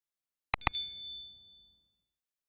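Two quick mouse-click sound effects, then a bright bell ding that rings out and fades over about a second: the notification-bell sound of a subscribe-button animation.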